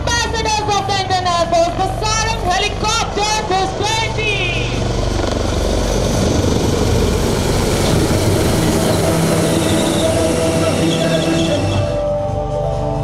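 HAL Dhruv helicopters flying overhead in formation, a steady rotor and engine rumble. A voice speaks over it for the first four seconds or so, after which a dense, steady rushing noise fills the rest.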